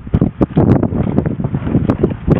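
Wind buffeting the microphone: an uneven low rumble broken by frequent irregular crackles.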